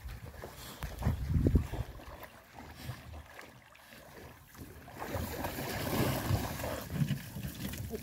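Wind rumbling on the microphone over the sound of water as a dog swims in beside a pontoon, with a rougher splashing hiss from about five seconds in as the wet dogs come up onto the walkway.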